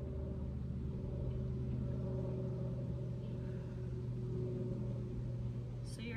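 Steady low engine hum at a constant pitch, with no rise or fall.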